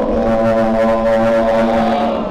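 A man chanting into a microphone, holding one long note at a steady pitch.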